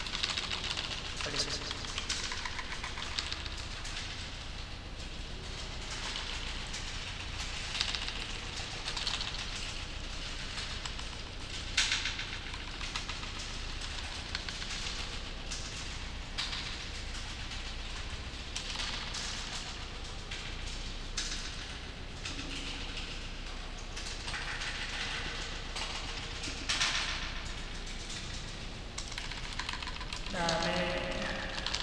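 Computer keyboard being typed on: irregular runs of key clicks over a steady low hum.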